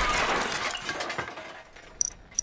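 Animated-film crash effect dying away: breaking and shattering debris clattering down after a heavy impact, fading out over about two seconds.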